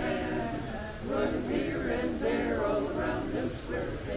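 Men's barbershop chorus singing a cappella in close harmony, holding chords that shift from note to note, with a short break about a second in.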